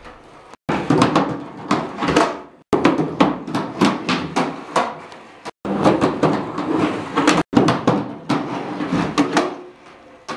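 Skateboard on a concrete floor: wheels rolling, with repeated clacks of the wooden deck popping and landing and the trucks grinding along the metal edge of a skate box. It comes in several short takes, each cut off abruptly by a brief silence.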